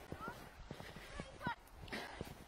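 Footsteps crunching through snow in an irregular walking rhythm, with faint, distant short shouts from children sledging.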